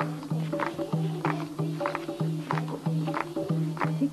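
Folk wedding music: a dholak drum beating a steady rhythm of about three strokes a second, with hand claps in time.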